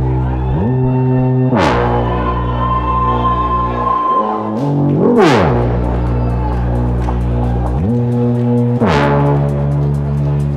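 Live techno played loud through a club sound system: a beatless passage of sustained, stacked synth bass notes that slide up and down in pitch, with three quick rising sweeps spread through it.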